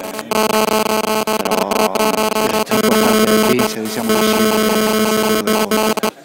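Loud, steady electronic buzz: a stack of even, unchanging tones starting abruptly just after the start and cutting off suddenly at the end. It is interference on the microphone audio, with a voice faintly audible underneath.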